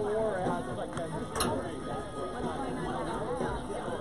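Many people's voices chattering at once, overlapping, with one sharp knock about a second and a half in.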